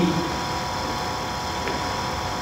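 Steady background hiss with an electrical hum, the noise floor of an old archival audio recording, heard in a pause between a man's words. His last word trails off at the very start.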